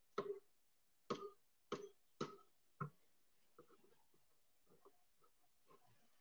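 Faint knife work on a plastic cutting board while deboning goat meat: five short scrapes and taps in the first three seconds, then a scatter of fainter little clicks.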